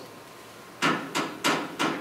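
Four sharp knocks, evenly spaced about a third of a second apart and starting about a second in, imitating a ghostly tapping on a bedpost.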